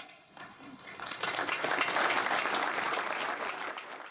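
Crowd applauding: many hands clapping, building up about a second in and dying away near the end.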